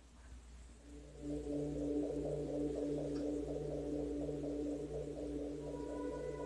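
Portable electronic keyboard starting to play a slow, dark-toned piece about a second in: low notes held under a quicker, repeating figure higher up.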